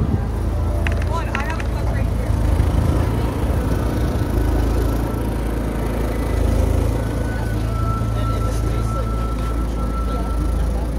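City street ambience: a steady low traffic rumble with indistinct voices. A thin, steady high tone comes in near the end.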